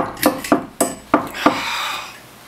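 Knocking on a door: about six sharp knocks, roughly three a second.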